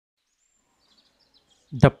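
Near silence, then a man's voice starts speaking near the end.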